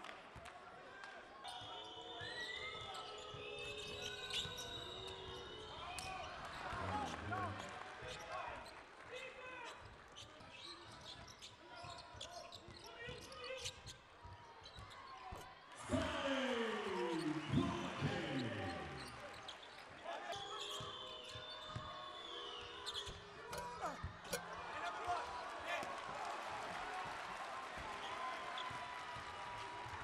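Game sounds from an indoor basketball court: a ball dribbled on the hardwood floor, with short high sneaker squeaks and voices around the arena.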